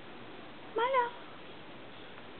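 A domestic cat meowing once, a short call about a second in that rises and then falls in pitch.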